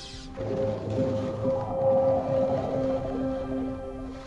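Background music: a slow, soft track of long held notes comes in about a third of a second in, just after an electronic track has faded out.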